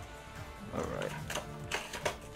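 Background music, with a few sharp clicks and rustles from a round trading-card tin being handled and opened by hand.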